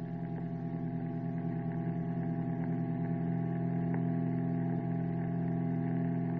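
A steady droning hum of several pitches held together, swelling slightly over the first few seconds.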